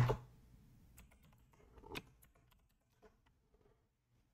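Computer keyboard keystrokes typing a terminal command: a few faint, scattered key clicks, the loudest about two seconds in.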